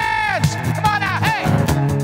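Live band music with a lead guitar playing notes that bend up and fall back in pitch, over a steady band groove with drums.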